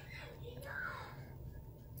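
Faint breathy, whisper-like voice and mouth sounds from a man pausing mid-sentence, over a low steady hum.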